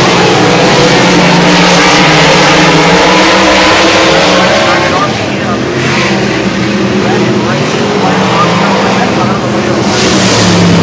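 Several dirt late model race cars' V8 engines running loud as the pack goes by, revving up and down, a little quieter from about halfway.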